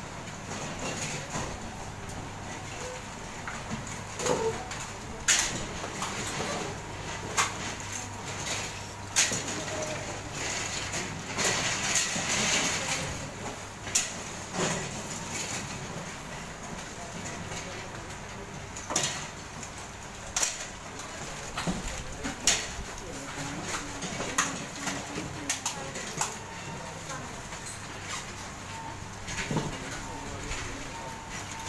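Assembly-line workroom ambience: a steady low hum with scattered clicks and taps from small parts being handled at the benches, and background voices.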